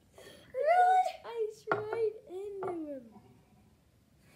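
A boy's high-pitched wordless yelps and shrieks, several cries in quick succession, the last one sliding down in pitch. It is his startled reaction to ice being put on him.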